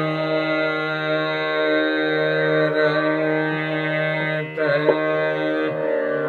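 Raag Bihag sung as a slow khayal: a male voice holds a long, steady note over a sustained drone. About four and a half seconds in, the note breaks briefly and wavers, then settles into a held note again.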